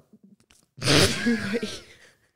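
A woman's breathy burst of laughter, about a second long, starting about a second in.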